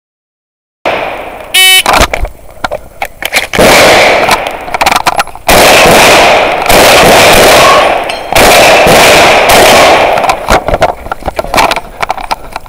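A short beep about a second and a half in, then a fast string of shotgun shots at steel targets, so loud that the recording clips into long stretches of harsh distortion.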